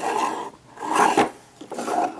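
Small drawers of a wooden jewellery box sliding shut and open: a rasping wood-on-wood rub in three strokes, with a few light knocks.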